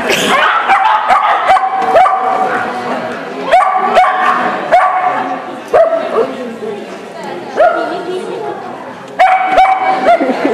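A dog barking repeatedly in short, high yips, about one every second or so.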